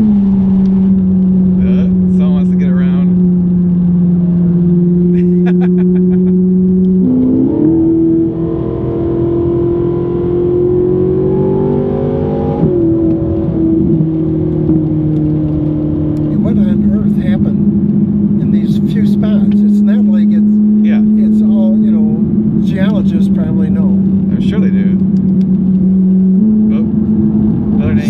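Ferrari V8 engine heard from inside the cabin, cruising at steady revs, its pitch stepping up and down at gear changes. Around the middle it pulls with a steadily rising pitch for a few seconds as the car accelerates, then drops back at the upshift.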